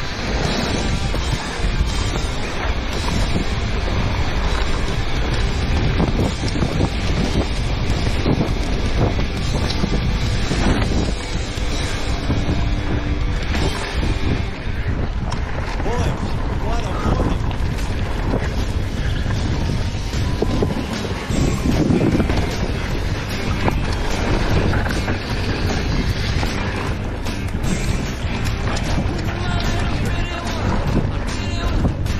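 Wind rushing over an action camera's microphone while a mountain bike runs a trail, with a steady clatter of tyres and bike rattling over rough ground.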